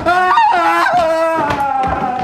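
A person wailing loudly: one long, high-pitched cry that wavers at first, then slowly sinks in pitch.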